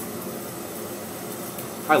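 A steady rush of lab ventilation air, with a gas bubbler on the distillation line bubbling behind it.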